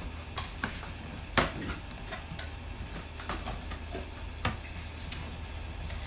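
Cardboard packaging being handled and opened: scattered light taps and scrapes as the box is worked open and an inner cardboard box is pulled out. There are two louder knocks, one about a second and a half in and another past the four-second mark, over a low steady hum.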